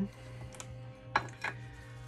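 A few sharp metal clicks as the lid of a small tin can of wood stain is taken off and set down, the loudest a little past a second in, over soft background music.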